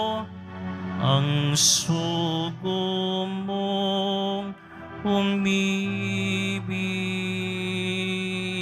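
A church hymn sung slowly by a voice with vibrato in long held notes over sustained accompanying chords, typical of communion-time singing at Mass. There is a short hiss of a sung consonant about two seconds in.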